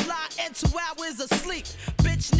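Hip hop track playing: a rapper over a drum beat, with a deep kick drum about every two-thirds of a second.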